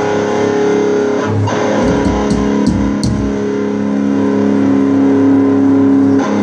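A live band's amplified instruments, led by electric guitar, holding a sustained chord through the PA, with the chord changing about a second and a half in and a few low bass notes shortly after.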